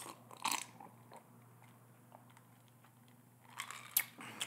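Close-miked drinking from a glass: soft sips and swallows, with a short breathy burst about half a second in. Near the end comes another burst and a sharp click.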